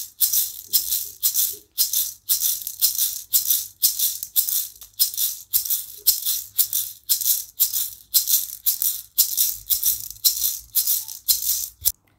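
A shaker played alone in a steady rhythm of about three short strokes a second.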